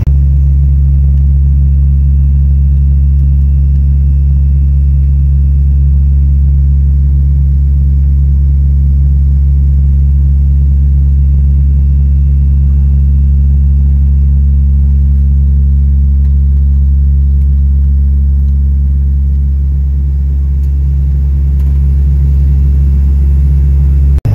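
Steady low drone of an airliner's turboprop engines and propellers heard inside the cabin, with several low humming tones held at a fixed pitch.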